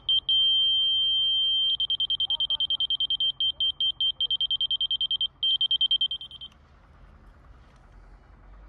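Spectra HR320 laser detector sounding its high-pitched audible tone as it picks up the rotary laser's beam. A few quick beeps become a steady tone for about a second and a half, the usual on-grade signal. Then it turns into rapid beeping, several beeps a second, as the reading moves off level, with another brief steady tone before it stops about six and a half seconds in.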